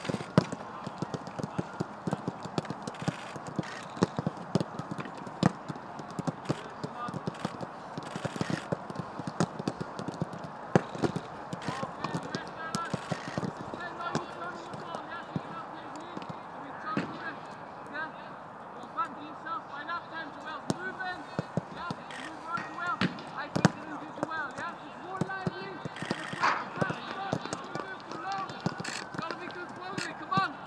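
Footballs being kicked on a grass training pitch: sharp thuds come repeatedly, several a second at times, with players' shouts and calls.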